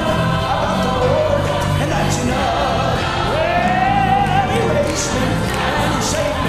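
A man singing a gospel song into a microphone, his voice gliding and holding long notes, over band accompaniment with a steady bass line and other voices joining in.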